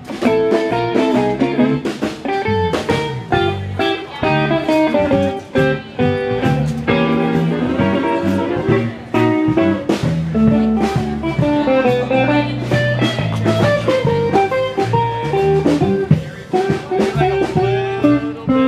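Guitar-led blues music, an instrumental stretch without singing, with a moving bass line under changing guitar notes.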